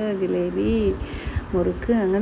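A person talking, with a short pause about a second in. A faint steady high-pitched tone runs underneath.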